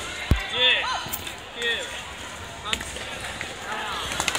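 Sneaker squeaks on a wooden gym floor and sharp knocks and a thud from a sports chanbara bout, over the general hubbub of voices in a large hall.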